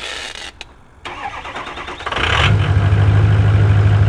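A pickup truck's engine cranks over and catches about two seconds in, then settles into a loud, steady idle.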